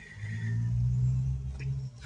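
A car driving past on the street: a low engine-and-tyre rumble that swells and then fades.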